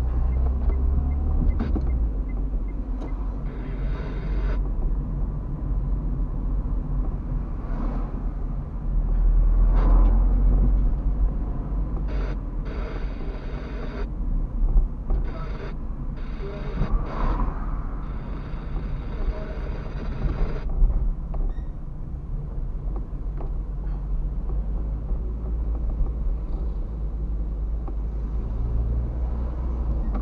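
Car interior recorded by a dashcam while driving: a steady low engine and road rumble, louder for a stretch about ten seconds in, with a few stretches of hiss between about twelve and twenty-one seconds.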